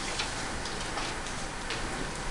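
Quiet room tone in a classroom, with a few faint ticks.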